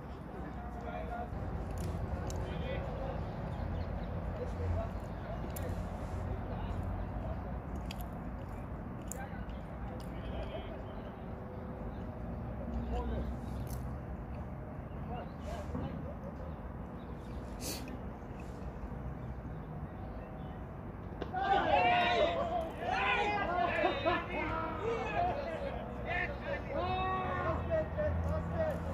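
Low steady rumble over a cricket field, with faint distant voices and a few clicks. About three-quarters of the way through, players break into loud shouts as a wicket falls: fielders appealing and celebrating.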